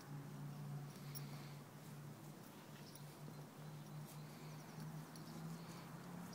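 A horse grazing close by, tearing grass and chewing with soft scattered crunching clicks. A faint low steady hum runs underneath.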